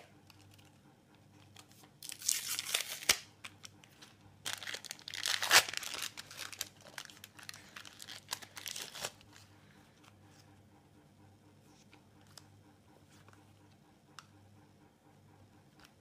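A Panini sticker packet's wrapper being torn open and crinkled by hand, in two bursts a couple of seconds long, the second the longer and louder. After that, only a few faint ticks.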